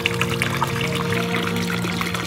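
Water running into a brim-full bucket, splashing steadily as it overflows, under background music holding steady notes.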